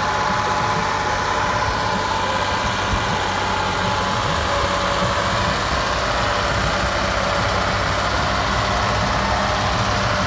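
Ford farm tractor's diesel engine running hard under load, hauling a heavily loaded soil trolley up a dirt ramp; a loud, steady drone.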